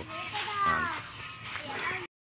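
Young children playing and chattering, with high voices; one call rises and falls about half a second in.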